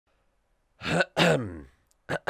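A man clearing his throat: a short catch followed by a longer throaty sound that falls in pitch, about a second in.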